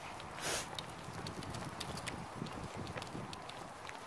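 Footsteps of someone walking, soft low thumps with scattered light clicks, and a brief rustle about half a second in.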